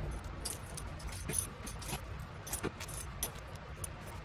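Irregular small clicks and crinkles, several a second, from hands handling tissue paper and a foam brush on a glued journal page, over a low steady room hum.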